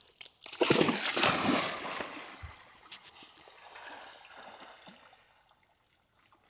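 A golden retriever plunging into a river after a thrown stick: a loud splash about half a second in, then water sloshing and splashing as she goes through it, fading away over the next few seconds.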